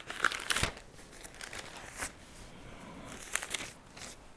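Thin Bible pages being leafed through by hand: a quick run of papery rustles at the start, a single page flip about two seconds in, and another short flurry near the end.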